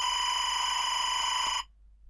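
SMPTE linear timecode signal played back on its own: a steady, harsh buzzing tone with a rapid flutter, pretty awful to the ear, that cuts off suddenly about one and a half seconds in. It is the sync signal that a firing system listens to in order to fire in time with the music.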